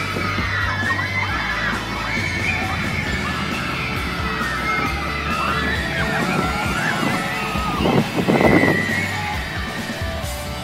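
Roller coaster riders screaming and yelling, many wavering cries overlapping, with a louder rushing burst about eight seconds in.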